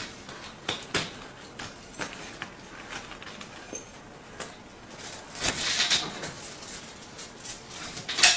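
Scattered small clicks and knocks with rustling, from a wrist restraint cuff being fastened and adjusted, with a denser burst of handling noise a little past halfway.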